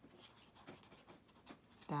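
Pen tip scratching on notebook paper in a run of short, irregular strokes as a word is written.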